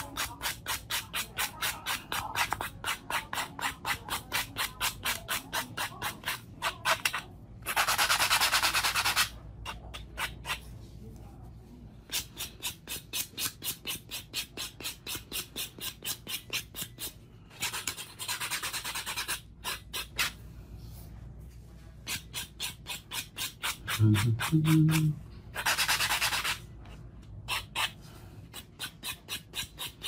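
A foam nail buffing block rubbed quickly back and forth across artificial nails by hand, about five short scratchy strokes a second. It comes in runs broken by a few longer, steady rubs. This is the buffing stage that smooths the nail surface after hand filing.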